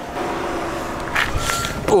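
Nissan Skyline V36 sedan idling with a steady low hum while someone climbs into the driver's seat, with a brief rustle partway through. A thin steady high tone starts about halfway in.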